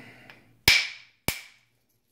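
Two sharp strikes of a copper bopper on a Flint Ridge flint preform, a little over half a second apart, each with a short ringing tail: percussion flaking that knocks most of a crystal pocket off the stone.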